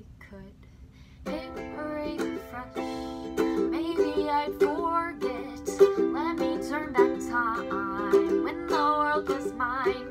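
Ukulele strummed in a steady rhythm of chords, starting about a second in: the intro of a song.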